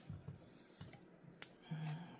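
Faint, sparse clicks and small snaps of Cattleya orchid roots being pried and broken off a wooden mount, three in all, the sharpest a little past halfway.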